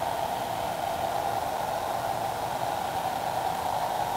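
Steady, unbroken fan-like whooshing noise at a moderate level, with no other events.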